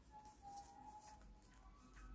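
Near silence: faint background music with a few light taps of knitting needles.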